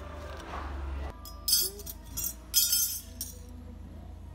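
Galvanized steel framing brackets (Simpson Strong-Tie connectors) clinking against each other and on a concrete floor as they are handled, a handful of sharp metallic clinks with a short ring, starting about a second and a half in.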